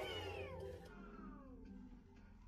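A high-pitched cry-like sound gliding steadily down in pitch over about a second and a half, over soft background music.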